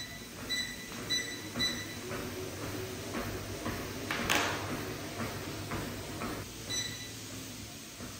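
UMAY walking pad treadmill beeping as its speed is changed with the remote: four short beeps in the first two seconds and another near the end. Footsteps thud on the moving belt about twice a second over the low hum of the motor.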